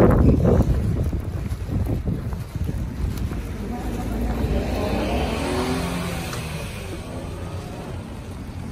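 Outdoor street noise: a heavy low rumble of wind on the microphone mixed with traffic, loudest at first and easing over the next few seconds.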